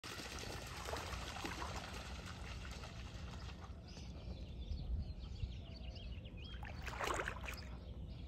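Shallow flood-irrigation water splashing and trickling, with a sharper splash about seven seconds in. Small birds chirp briefly in the middle.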